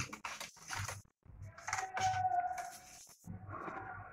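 Crepe paper rustling and crinkling in the hands as it is handled, in short scattered bursts. A drawn-out pitched call sounds in the background about halfway through, and another one near the end.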